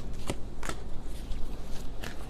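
A tarot deck being shuffled by hand, with a few sharp snaps of the cards in the first second.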